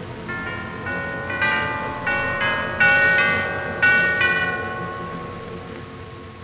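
Bell chimes struck in a run of about nine strokes, each tone ringing on and overlapping the next. The strokes grow louder through the middle, then fade away, over a low orchestral score.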